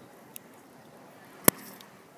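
Quiet outdoor background with a faint tick, then one sharp, loud click about a second and a half in.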